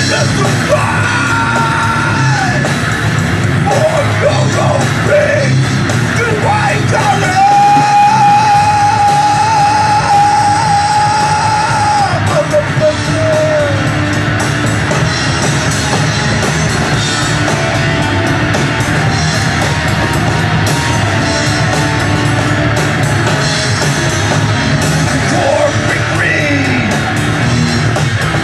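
Live rock band playing loud: distorted electric guitars, bass and drum kit, with a vocalist yelling over them. Near the middle one long note is held for several seconds.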